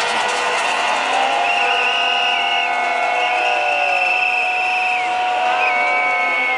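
A demonstrating crowd with whistles blown in long, trilling blasts over several steady, held tones, against a continuous crowd din.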